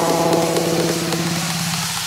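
Electronic dance music in a breakdown: the beat drops out and a single low, buzzy synth note is held, its tone growing duller toward the end as the mid and upper sound is filtered away.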